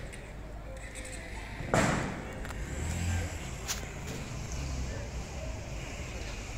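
Street ambience with a low traffic rumble, broken about two seconds in by a single loud bang that dies away quickly, and a faint click a couple of seconds later.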